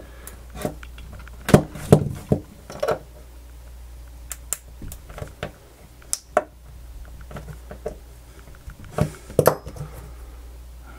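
Plastic housing of an AUKEY SH-PA1 smart plug crinkling and clicking as its glued lid is pried apart at the seam, the sound of the joint starting to give way. Irregular sharp cracks, the loudest in the first few seconds and another cluster near the end.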